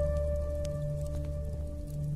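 Native American flute meditation music between phrases: the last held flute note dies away over a low, slowly pulsing drone.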